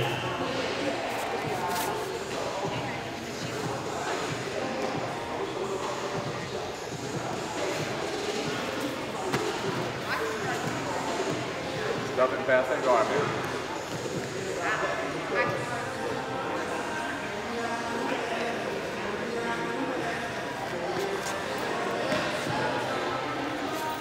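Busy gym-hall background: many voices talking and calling out, echoing in the large room, with a few scattered thumps and a louder shout about twelve seconds in.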